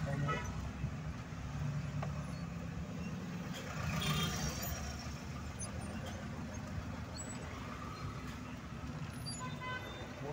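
Car driving in city traffic, heard from inside the cabin: a steady low engine and road rumble, with short higher-pitched sounds about four seconds in and again near the end.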